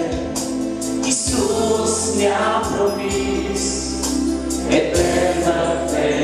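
A mixed group of men and women singing a Romanian Christian worship song together into microphones, with held notes, backed by a band with bass and a steady cymbal or hi-hat beat.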